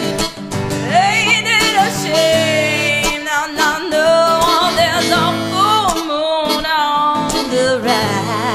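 Live country-rock band music: guitars under a harmonica lead played through a handheld microphone, its melody bending and wavering in pitch, with no sung words.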